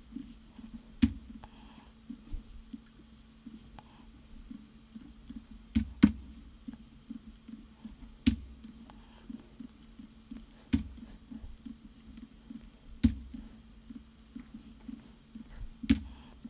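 Computer mouse clicks and keyboard taps: a sharper click every two to three seconds, with fainter small clicks between, over a low steady hum.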